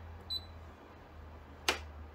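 Embroidery machine touchscreen giving one short, high beep as a key is pressed, then a single sharp click about a second and a half later, over a faint low hum.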